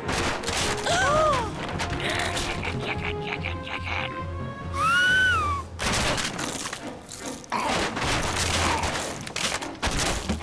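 Cartoon soundtrack: background music under a run of thumps and crashes, with two short rising-and-falling squawk-like calls from a creature, about a second in and again about five seconds in.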